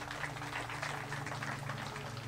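A small outdoor crowd clapping lightly and unevenly for a couple of seconds, with a faint low steady hum underneath.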